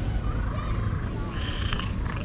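A white-and-grey stray cat meowing close to the microphone, loudest in the second half, over a steady low rumble.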